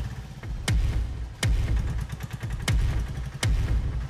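Background score music built on deep drum hits in pairs, about three-quarters of a second apart, a pair every two seconds, over a low rumble.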